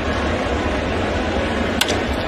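Steady ballpark crowd murmur, then near the end a single sharp crack of a wooden bat squarely hitting a pitched baseball, sending it off as a line drive.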